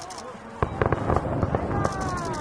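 Aerial fireworks going off. About half a second in, a low rumbling boom starts, followed by a rapid series of sharp cracks and crackles.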